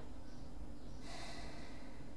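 A short breath through the nose close to the microphone, starting about a second in and lasting under a second, over a low steady background hum.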